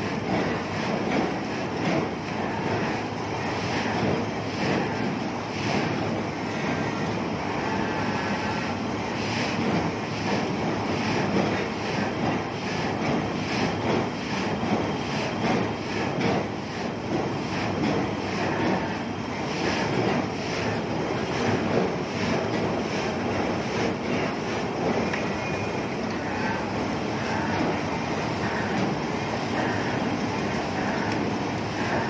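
Heavy construction machinery running steadily and loudly, a dense rumbling noise with irregular small knocks through it, during tremie concreting of a bored pile.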